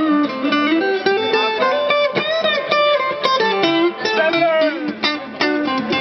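Guitars playing a song: a melodic lead line stepping and sliding between notes over the other guitar's accompaniment.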